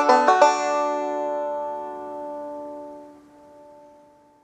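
Five-string banjo, picked bluegrass-style, finishing a passage: a few quick plucked notes, then a final chord left ringing and fading away over about four seconds.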